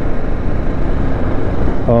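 Steady wind and road noise from a motorcycle riding along, wind rushing over the microphone, with the engine running underneath.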